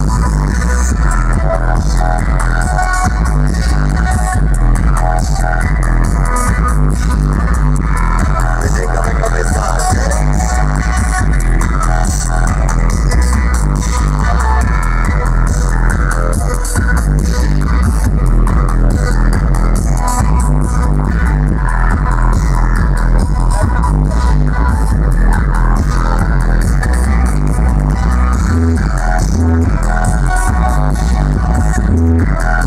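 Loud sound-system music with heavy, steady bass, played through a street speaker stack.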